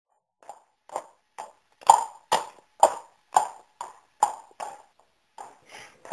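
Clip-clop of hooves: a steady run of hollow knocks, about two a second, growing louder and then fading away.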